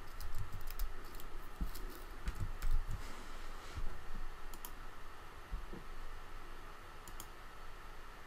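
Typing on a computer keyboard: scattered, irregular keystrokes with short pauses between them.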